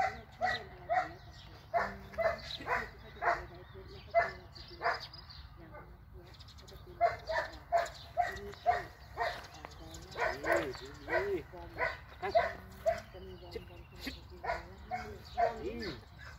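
Dog barking repeatedly in short, sharp barks, several a second in bursts, with a pause of about two seconds a third of the way in.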